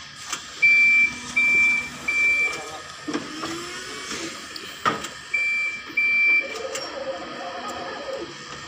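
Forklift warning beeper: a steady high-pitched beep sounding three times in a row about half a second each, then twice more a few seconds later. A sharp knock comes between the two sets of beeps.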